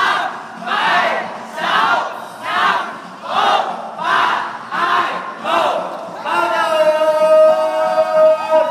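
Crowd chanting in rhythmic unison, one rising-and-falling shout a little more than once a second, building suspense before the winner of the battle is declared. About six seconds in, the chanting gives way to a louder long, steady held tone.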